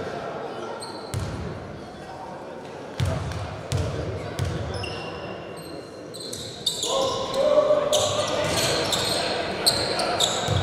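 Basketball bounced a few thuds on a hardwood gym floor as a player readies a free throw, with sneakers squeaking. From about seven seconds in, play resumes: more sneaker squeaks and players' shouts.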